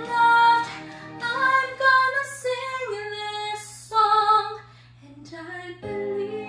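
A young woman singing a slow ballad into a handheld microphone, holding long notes that bend in pitch. Her voice drops away briefly near the end before a new phrase begins.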